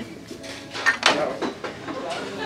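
A small ceramic figurine set down into a plastic shopping basket, with a sharp clatter about a second in.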